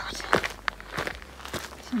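Footsteps of a person in trainers walking at a steady pace on a dry, stony dirt track, each step a short crunch on loose gravel.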